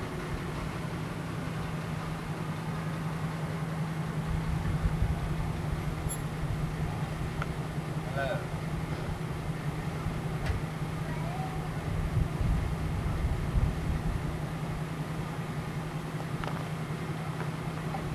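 A postal mail jeep pulls up to a roadside mailbox and sits running, its low engine rumble building from about four seconds in, over a steady low hum.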